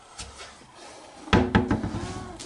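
Peanut butter jars being put away in a kitchen cupboard and the cupboard door shut, with a sharp knock past halfway.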